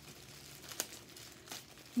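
Clear plastic bag crinkling as it is handled, with a couple of sharper crackles about a second and a second and a half in.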